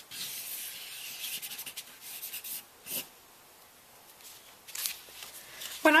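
Felt tip of a paint marker scratching and rubbing across paper in drawn strokes for about two and a half seconds, then a single short tick about three seconds in, after which it goes quieter.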